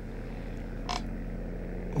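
Steady low hum of room tone, with one brief soft sound about a second in.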